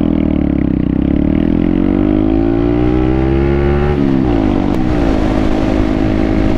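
Honda Grom's 125 cc single-cylinder engine pulling away from a stop, its pitch climbing steadily through a gear for about four seconds, then dropping sharply at an upshift and holding steady as the bike cruises.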